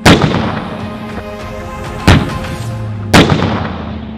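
A Merkava tank's 120 mm smoothbore main gun firing three times, each a sharp blast that dies away: at the start, about two seconds in, and about a second after that. Background music runs underneath.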